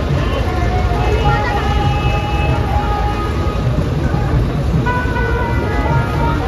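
A DJ sound system playing music with a heavy, continuous low bass rumble, held sung or played tones over it, and a crowd's voices mixed in.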